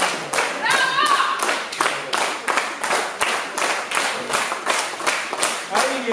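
Audience clapping in unison, an even rhythm of about four claps a second. A voice calls out briefly about a second in.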